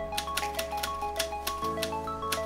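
Background music: a light melody of short notes over a quick, steady ticking beat, with the bass changing near the end.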